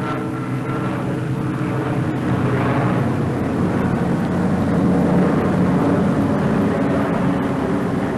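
Piston engines of twin-engine propeller bombers in flight, a steady drone that grows a little louder over the first few seconds and then holds.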